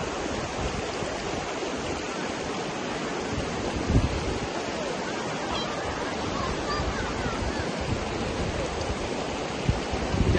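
Shallow mountain river rushing over stones, a steady rushing noise, with wind on the microphone. A brief low thump about four seconds in.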